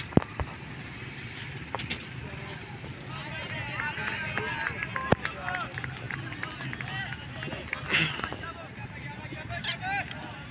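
Low steady rumble of a GE U20 diesel-electric locomotive approaching from afar, under many short chirps of birds. A brief voice sounds about eight seconds in.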